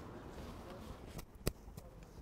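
Faint handling of bird netting being pegged down into garden mulch, with a few short, sharp clicks about a second and a half in, the strongest in the middle of them.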